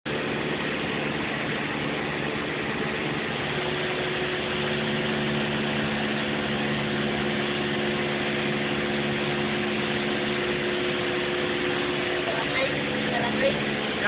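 A Cessna 172's piston engine and propeller running steadily in flight, heard from inside the cockpit as a constant drone.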